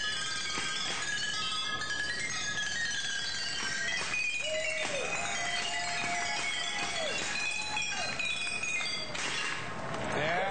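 A row of glass bottles struck one after another by a roller-skater rolling past, ringing out a quick run of clinking, chime-like notes that make a tune. A broad rush of noise comes in near the end.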